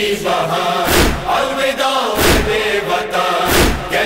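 Voices chanting a Shia noha lament, set against a steady beat of chest-beating (matam) strikes, three of them about 1.3 seconds apart.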